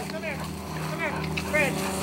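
A dog whining in three short, high cries that fall in pitch, over a steady low hum.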